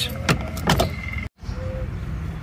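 A steady low rumble with two short sweeping sounds in the first second, cut off by a brief total dropout just past halfway, after which the rumble carries on.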